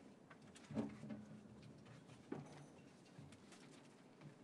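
Near silence: quiet room tone, with two faint, brief low sounds, one about a second in and one a little past two seconds.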